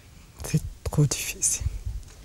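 A woman's breathy, whispered vocal sounds close to a clip-on microphone: several short hissing breaths from about half a second in to near the end, with a few low thumps.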